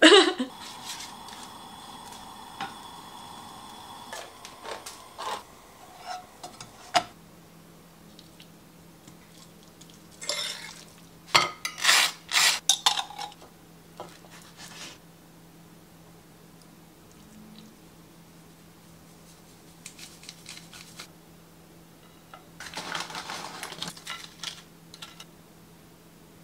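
Kitchen prep sounds: a knife, utensils and a plate clinking and scraping in scattered bursts, including a knife spreading pesto across toasted bread. The loudest clatter comes in the middle, with more scraping near the end, over a low steady hum.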